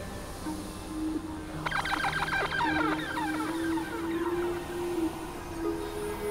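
Experimental electronic synthesizer music. Sustained synth tones step from note to note, and about a second and a half in a sudden flurry of quick, falling high bleeps breaks in and thins out over a couple of seconds.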